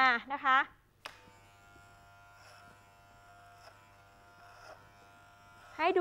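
Electric hair clipper running with a faint, steady buzz while it trims hair held over a comb (clipper-over-comb), starting after a short click about a second in.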